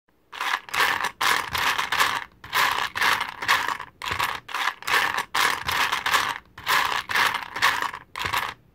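Repeated short bursts of scratchy clattering, like small hard pieces being rattled and scraped, about two to three bursts a second with brief gaps between them.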